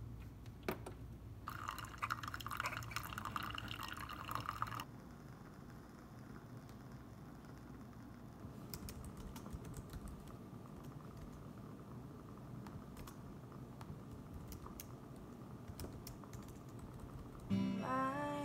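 A Keurig single-serve coffee maker pours a thin stream of brewed coffee into a mug for about three seconds, over a low machine hum. Then comes soft, sparse tapping on a laptop keyboard, and acoustic guitar and singing start right at the end.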